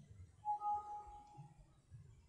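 Windows alert chime, a short pitched tone of two notes held for just under a second, sounding as a warning dialog box pops up on the screen.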